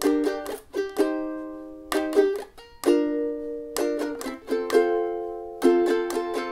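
Ukulele strummed in a down, down, up, down, up pattern, one pattern per chord, changing chords about once a second through the song's interlude progression (Em Am G D).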